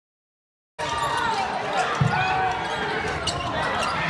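Basketball being bounced on a hardwood gym floor, one clear thump about two seconds in, over the voices of the crowd and bench. Sound begins a moment in.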